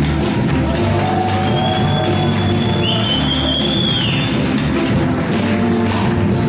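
Live band playing a steady-beat instrumental passage on acoustic guitar, congas, drum kit and bass. A high note is held from about a second and a half in until about four and a half seconds in.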